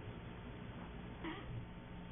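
Quiet room tone: a steady low hiss with a faint hum, and one faint, brief sound a little past the middle.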